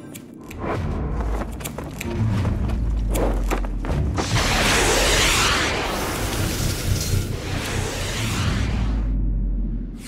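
Cinematic film score with a deep bass drone and a swelling rush of noise, loudest from about four to nine seconds in. It cuts off sharply about a second before the end.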